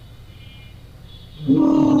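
A man coughs once, loudly, about one and a half seconds in. The cough is drawn out with a steady hum of the voice.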